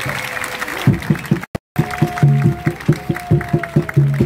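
Live band music: a bouncy, evenly pulsed dance tune with a steady beat of about four to five strokes a second, bass notes and a held melody line, kicking in about a second in from a noisier stretch. The sound cuts out completely for a moment just after the beat starts.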